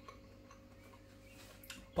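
Faint scattered clicks over a steady low hum and a faint held tone in a quiet kitchen.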